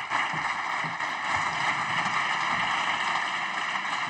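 Deputies in a parliament chamber applauding: steady, dense clapping that has swelled up just before and holds evenly.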